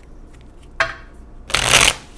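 Tarot cards being shuffled by hand: a brief papery rustle a little under a second in, then a louder half-second shuffle near the end.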